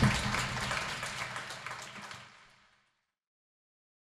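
Audience applauding, fading out to nothing about two and a half seconds in.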